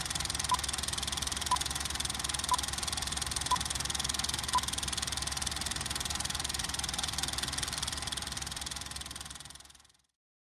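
Film projector running with a steady whirring clatter, under five short beeps about a second apart: a film-leader countdown from five. The projector sound fades out near the end.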